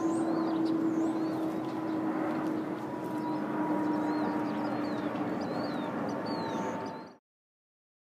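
Steady engine drone whose pitch slowly sinks, over a wide rushing background, with short high bird chirps scattered through it; all sound cuts off abruptly about seven seconds in.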